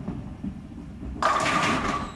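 Bowling ball rolling down a wooden lane with a low rumble, which grows louder and brighter about a second in as the ball nears the pins.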